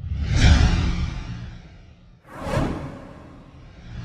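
Cinematic whoosh sound effects from an animated logo intro: swells of rushing noise over a deep rumble, each rising fast and fading over a second or two. One comes at the start, a second about two seconds in, and a third builds near the end.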